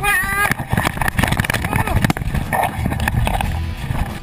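KTM enduro motorcycle engine revving hard in a brief rising burst, then sputtering among irregular knocks, scrapes and rattling of loose rock as the bike tips over on a steep, rocky hill climb.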